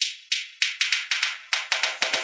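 Dance remix intro build-up: a short, bright, hissy percussion hit repeating and speeding up from about three to about six or more hits a second, each hit growing fuller as the roll builds toward the drop.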